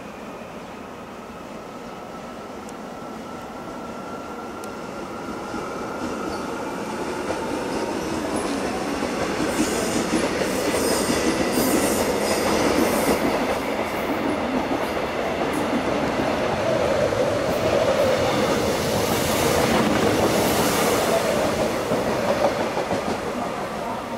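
Korail Nuriro electric multiple unit approaching and passing: it grows from faint to loudest through the middle, with clicking of the wheels over rail joints, and eases off near the end.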